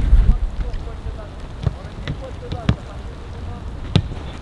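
Footballs being struck on a grass training pitch: a few sharp, short thuds, the loudest near the end, over faint distant voices. Wind rumbles on the microphone at the start.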